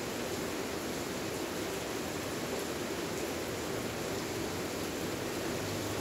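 Steady, even hiss of background noise with no distinct events.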